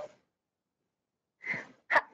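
A person's short, sharp breath at a video-call microphone about one and a half seconds in, followed by a brief click just before speech begins.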